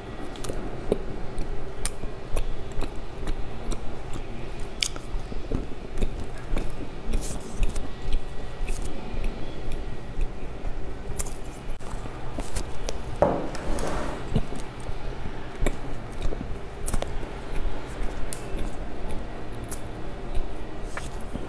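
Close-miked chewing and biting of a soft small bun, with wet mouth clicks and smacks. One louder burst of noise comes about two-thirds through.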